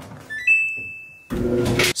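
An electronic clothes dryer's control panel beeping as its start button is pressed: a couple of short beeps, then one held higher beep lasting most of a second. A louder, fuller sound with a low hum comes in near the end.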